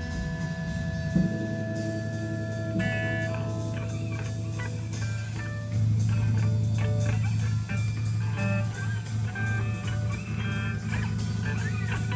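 Two electric guitars playing a loose, improvised psychedelic jam, with long held notes and picked phrases. A sharp knock comes about a second in, and a loud low note swells in at about six seconds.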